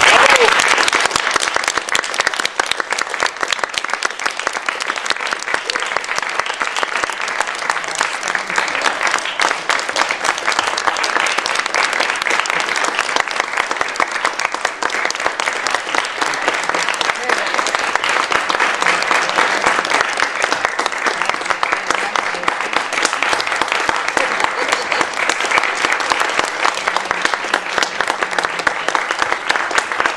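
Audience applauding, loud and sustained, with voices mixed in.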